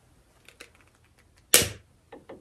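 Long-neck utility lighter being handled with a few faint clicks, then one sharp snap of its piezo igniter about one and a half seconds in as it is lit.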